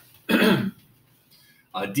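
A man clearing his throat once, a short harsh burst about a third of a second in.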